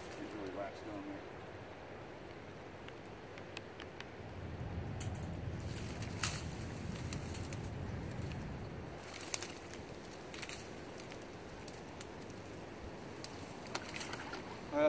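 Scattered sharp clicks and clinks of a wire-mesh muskrat colony trap being handled, with a low rumble in the middle of the stretch.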